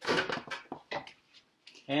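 Metal kitchen tongs scraping and clicking against a bamboo steamer basket: a short scrape, then a handful of light, separate taps.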